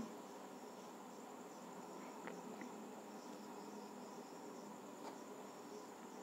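Near silence: faint room tone with a thin, high-pitched insect chirring in the background.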